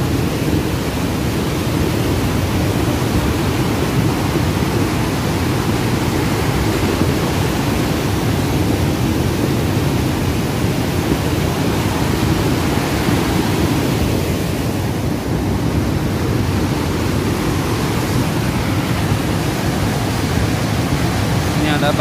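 Cold lahar, a fast flood of mud, sand and stones, rushing down a river channel: a steady, loud rushing noise heaviest in the low end, with no separate knocks from the stones.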